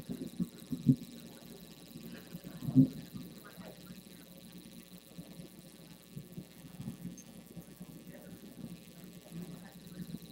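Quiet room tone with a faint steady hum, faint indistinct voices and a few brief soft knocks, the loudest a little under three seconds in.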